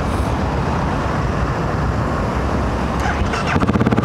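Single-cylinder 652 cc engine of a 2008 BMW G650 Xchallenge dual-sport motorcycle running as the bike rides along, a steady rumble. About three and a half seconds in, the engine's even firing beat comes up louder and more distinct.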